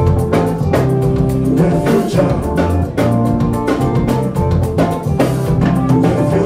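Live band playing with a steady drum-kit beat under electric bass and keyboard.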